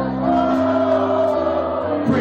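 Live pop band with electric guitars, keyboard and drums playing, with singing that holds one long note that slowly falls in pitch over the chord. The sound is recorded through a small digital camera's microphone.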